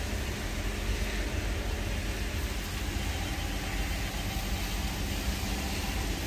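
An engine running at a steady speed: an even low drone with a hiss over it.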